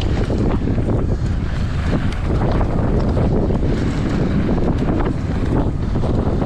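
Wind buffeting an action camera's microphone during a fast mountain-bike descent, over a steady rumble of knobby tyres rolling across loose, rocky dirt, with faint scattered ticks.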